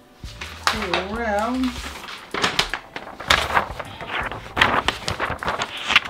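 A person's voice sings a short wavering note about a second in. Then comes a busy run of rustling, crinkling and light knocks as a quilted polyester blanket is moved and smoothed by hand.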